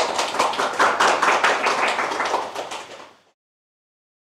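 A small audience applauding: dense, irregular hand clapping that thins out and then cuts off abruptly a little past three seconds in.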